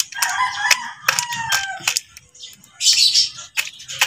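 A chicken pecks pellet feed from a plastic dish in a run of sharp beak-on-plastic clicks, while a rooster crows for about two seconds near the start. There is a short rustle about three seconds in.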